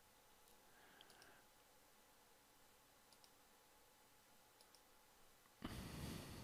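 A few faint computer-mouse clicks, some in quick pairs, over near-silent room tone, as bits of sky are clicked with a selection tool. Near the end comes a short, louder rush of noise.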